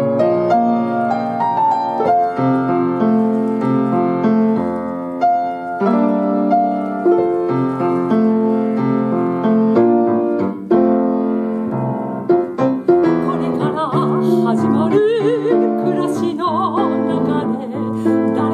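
Grand piano playing a slow instrumental interlude of a song. About fourteen seconds in, a woman's singing voice with vibrato comes back in over the piano.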